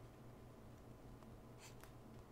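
Near silence: faint stylus strokes on a tablet screen, a couple of short scratches in the second half, over a low steady hum.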